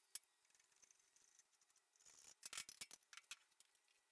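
Faint scattered clicks and light taps from a wooden workbench leg being handled and set down on a table saw's metal top, with a short cluster of them about two and a half seconds in.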